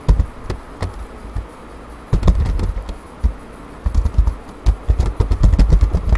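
Typing on a computer keyboard: irregular, sharp keystroke clicks, with a low rumble coming and going beneath them.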